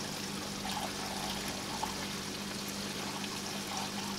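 Water from the aquarium's drain pipe pouring steadily into the sump filter and splashing onto the filter floss, a continuous trickling rush. A low steady hum runs underneath.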